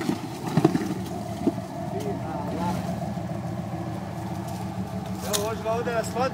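Engine of a modified Jeep Wrangler running steadily as it crawls up a steep, muddy track, with a few sharp knocks in the first couple of seconds and another near the end. A voice begins shouting near the end.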